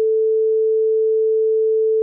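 A 440 Hz sine-wave test tone (the note A) from Audacity's tone generator, one pure, steady pitch held at constant level.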